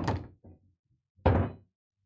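Pool balls on a coin-op bar table: a clack at the very start as the shot plays, then a single loud knock about a second and a quarter in as the pocketed object ball drops into the pocket and ball return.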